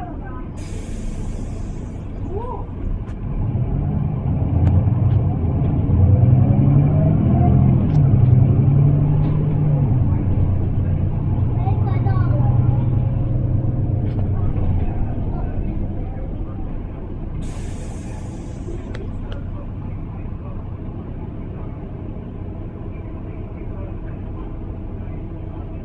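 Inside a Mercedes-Benz Citaro single-deck bus: the diesel engine's low drone builds as the bus accelerates, holds, then eases off in the second half. Two short hisses of compressed air from the bus's air brakes, one just after the start and one about three-quarters of the way through.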